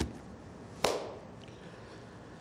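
A single sharp knock or chop-like strike a little under a second in, dying away quickly.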